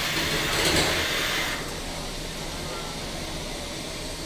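Steady mechanical noise of two 3 lb combat robots' drive motors as they shove against each other in a pushing match, their weapons not spinning. Louder for the first second and a half, then quieter.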